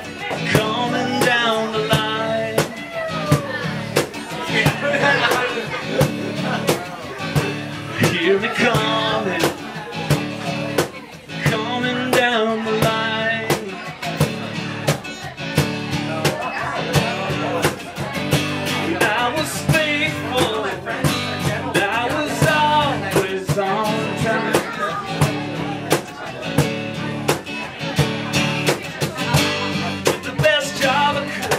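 Live acoustic guitar and cajon playing a folk-blues song together, the cajon keeping a steady beat under the guitar, with a wavering melody line over them.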